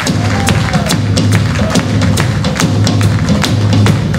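A live band playing: a steady drum beat of sharp hits, about three or four a second, over a pulsing bass guitar, with guitars and keyboard.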